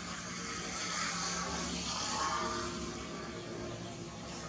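A distant motor vehicle passing: a steady rushing engine noise that swells to a peak midway and then eases off.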